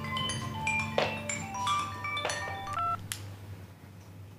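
Mobile phone ringtone playing a marimba-like melody of struck notes, which cuts off about three seconds in as the call is answered, followed by a sharp click.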